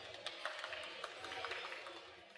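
Faint background noise of a busy exhibition hall, with scattered soft ticks, fading out near the end.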